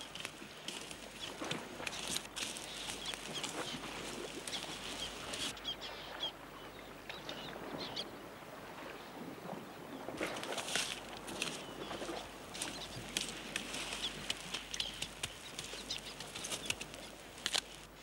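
A stick scraping and raking hot sand and ash over fish buried in the coals of a fire pit: an irregular run of scrapes and small clicks that thins out for a few seconds in the middle and picks up again after.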